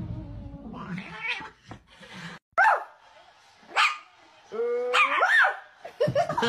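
Pet animal cries: two short sharp calls that bend in pitch, about a second apart, then a longer rising call near the end.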